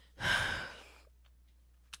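A woman's audible sigh: one breathy exhale that fades out within about a second.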